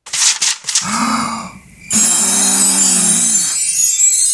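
Cartoon sound effects for the illustrated book opening. A few clicks come first, then a papery rubbing swish. About halfway in, a loud hiss starts under a low, sustained, gently bending tone.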